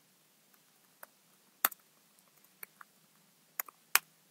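Computer keyboard keystrokes as text is typed: about eight sharp, scattered clicks, some in close pairs, the loudest near the end.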